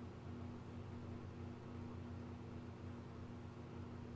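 Faint steady low hum over a soft hiss: the room tone of a small studio, with no distinct sound events.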